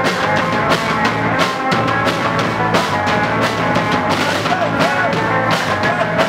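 Rock band playing live: electric guitar and bass over a drum kit keeping a steady beat.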